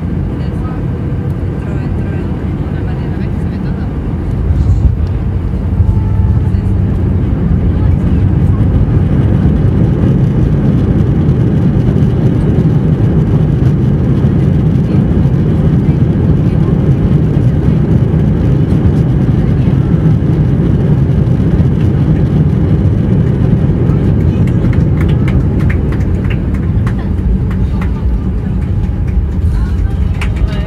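Airbus A320 landing, heard from a window seat over the wing. The wheels touch down about five seconds in, where the noise jumps up. A loud, steady rumble of engines and rolling wheels follows through the landing roll and eases off near the end as the jet slows.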